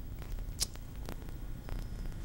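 A pause between a man's sentences: a steady low hum of the room and recording, with a few faint short clicks.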